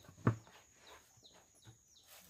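Faint bird chirps, a few short falling notes, with one brief soft knock about a quarter of a second in.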